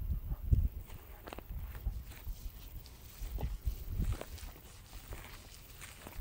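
Slow, irregular footsteps through grass, with soft low thumps and light rustling, louder near the start.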